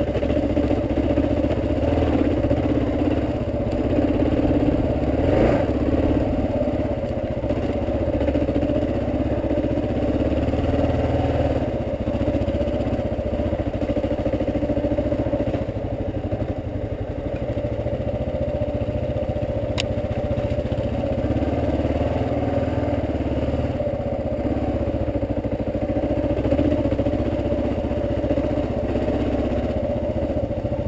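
Dual-sport motorcycle engine running steadily at low trail speed, picked up close by the bike's mounted camera. A single sharp click is heard about two-thirds of the way through.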